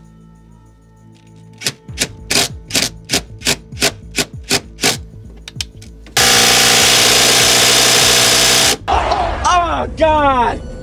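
A series of sharp knocks, about three a second, then a cordless impact wrench hammering in one loud, steady burst of about two and a half seconds on a very tight fastener. It cuts off suddenly, and a man's voice cries out near the end.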